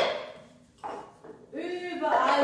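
A small plastic cup set down on a wooden floor: one sharp clack with a short ringing tail at the very start, then a softer knock a little under a second later. A voice starts near the end.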